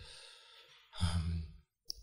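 A man's short sigh, a voiced exhale at the microphone, about a second in, during a pause in talk. A small mouth click follows just before speech resumes.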